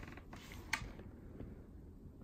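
Faint handling noise of cosmetics packaging being set and nudged into place on a plastic tray, with one sharp tap a little under a second in.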